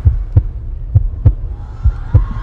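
Heartbeat sound effect in a break of a pop song's backing track: low double thumps, about one pair a second, with the rest of the music dropped out.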